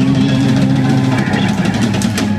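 Live rock band music: electric guitar and bass holding sustained notes.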